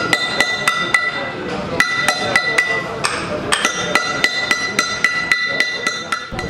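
A mallet tapping a steel chisel to cut letters into a stone slab. It is a quick run of strikes, about four a second, each with a bright metallic ring, broken by two short pauses.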